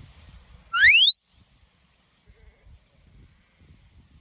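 One short, loud, rising whistle about a second in: a shepherd's whistle command to a working sheepdog. Faint low rumbles of wind on the microphone run under it.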